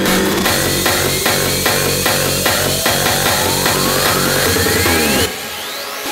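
Hardstyle dance track: a hard kick drum pounding about two and a half beats a second under a synth sweep that rises steadily in pitch, building up. Near the end the kick and bass cut out suddenly and the music drops to a thinner, quieter passage.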